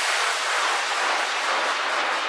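Steady synthesized white-noise wash in the outro of an electronic dance track, with the kick drum and bass gone, leaving only hiss.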